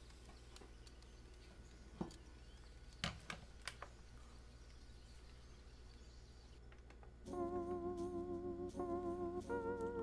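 A few light knocks and clicks as a metal keyboard top case and a digital kitchen scale are handled and set down. About seven seconds in, soft background music with wavering sustained tones comes in.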